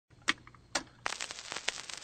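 Two sharp clicks a little under half a second apart, then about a second of dense crackling and rustling.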